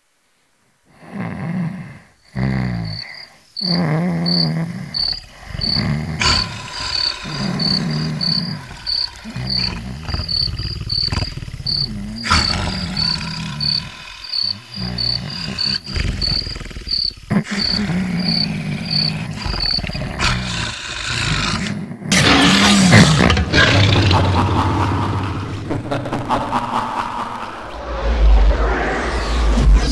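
Crickets chirping evenly, about two chirps a second, over irregular low, loud sounds. About 22 seconds in, a loud crash and rumble takes over.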